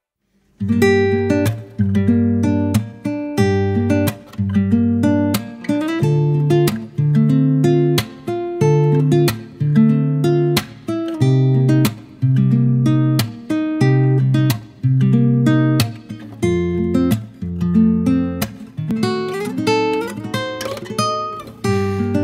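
Acoustic guitar strumming chords in a steady rhythm as the instrumental intro of an acoustic pop song. It comes in about half a second in, after a brief silence.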